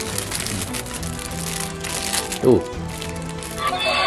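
Background music with steady low tones, with the plastic bag around a sprue of toy rings crinkling for the first couple of seconds. Near the end, the Taiga Spark toy's electronic sound starts playing from its small speaker as its light comes on.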